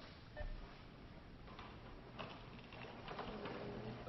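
Low room noise with a few faint clicks and taps.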